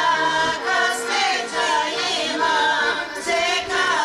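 A group of women singing a Bulgarian folk song together, in phrases with held, wavering notes.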